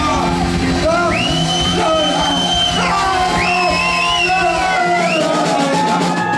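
Live rock band playing: electric guitar and drums under a high, held melodic lead line that bends in pitch. The low drum beats drop out about five seconds in.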